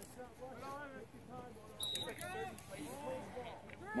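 Indistinct, fairly faint voices of players and people along the sideline calling out across an open field. About two seconds in come a couple of sharp clicks and a brief high tone.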